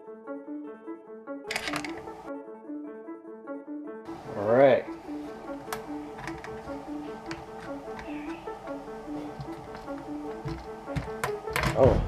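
Background piano music with a steady repeating pattern of notes, over scattered light clicks and knocks of small metal parts being handled. About four and a half seconds in there is one brief, louder sound with a wavering pitch.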